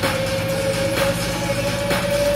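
Bass-heavy electronic music played through a JBL Stage 320 party speaker with its deep bass boost on: a long held note gliding slowly upward over a heavy low bass line, with a sharp beat hit about once a second.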